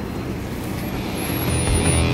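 Steady roadway traffic noise from a line of passing and idling cars. About one and a half seconds in, a rock music track begins to rise in under it.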